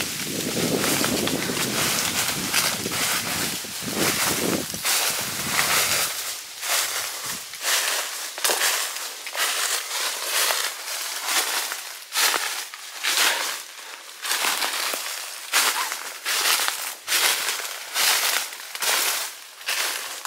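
Footsteps crunching through dry fallen leaves at a steady walking pace, about one to two steps a second. The leaf litter is crisp after a long dry spell. A low rumble runs under the first few seconds.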